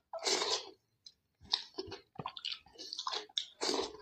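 Close-up wet chewing and lip-smacking of a mouthful of rice and curry eaten by hand, in irregular clicks and smacks. Two louder wet, noisy bursts come about half a second in and just before the end.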